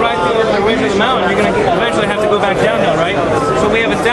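Crowd chatter: many voices talking at once, steady and loud throughout.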